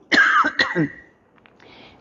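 A woman coughing into her hand to clear her throat: a short burst of a few coughs lasting under a second.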